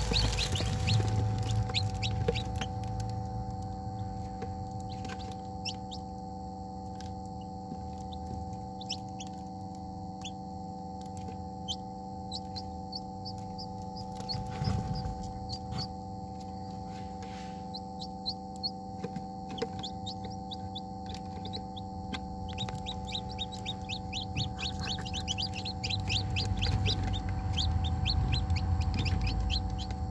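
Newly hatched chicks peeping in an incubator: many short, high cheeps, coming in quicker runs about a third of the way through and again near the end, over a steady low hum.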